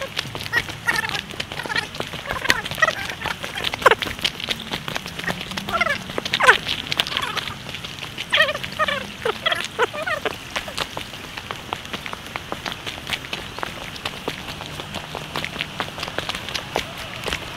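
Footsteps crunching on a gravel forest path, an irregular run of small clicks, with a few short voice calls or laughs in the first ten seconds.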